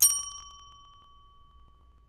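A single bell-like ding, struck once and ringing out as a clear high tone that fades away over about two seconds.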